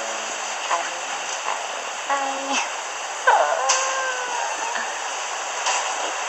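Steady rushing background noise, with a few short snatches of a person's voice; the longest, about three seconds in, slides up and then holds for over a second.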